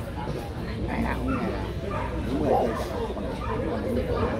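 A dog barking amid crowd chatter.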